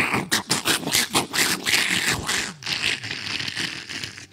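A man making mouth sound effects into a handheld microphone, imitating an airstrike: a quick, rattling run of sharp explosive pops for about two and a half seconds, then a lower rumbling noise.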